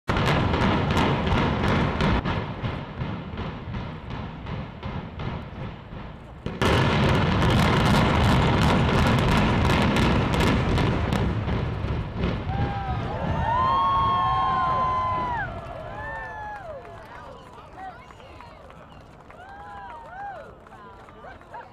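Building implosion: demolition charges fire as a loud, rapid crackle of blasts. The blasts break off for a moment and surge again, louder, about six and a half seconds in, then settle into the rumble of the collapsing building, which fades over several seconds. Gulls call over the fading rumble near the end.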